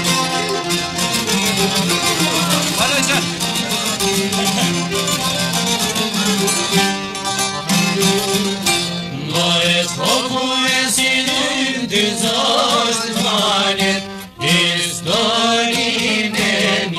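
Albanian folk music played by a small band of plucked long-necked lutes (çifteli and sharki) with violin, a steady, rhythmic instrumental passage. About halfway in, a gliding, ornamented melody line comes in over the plucked strings, with a brief break near the end.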